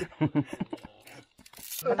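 Men's voices talking, then a brief high hiss near the end.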